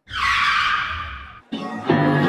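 A screeching sound effect: a harsh hiss that starts abruptly and fades away over about a second and a half. Music with a steady beat starts just before the end.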